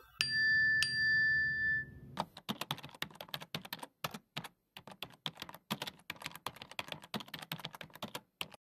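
A bright chime struck twice, ringing briefly, then a long run of rapid keyboard-typing clicks, a typing sound effect for text being typed out on screen.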